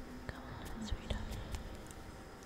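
Faint, eerie whispering voice trailing off, with a few soft clicks and low knocks about a second in.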